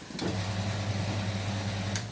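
Bench pillar drill switched on: a click, then its electric motor starts and runs with a steady hum. The Forstner bit spins free in a test spin, not yet cutting.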